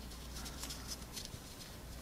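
Faint rustling and light scratchy ticks of a nylon NATO watch strap being folded and tucked through its keeper loops on the wrist.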